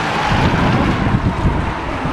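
Wind buffeting the camera microphone: a loud, uneven low rumble with a steady hiss over it.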